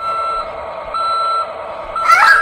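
Toy garbage truck's electronic sound unit playing reversing beeps: a steady high beep about half a second long, sounding twice about a second apart, over a faint electronic hum.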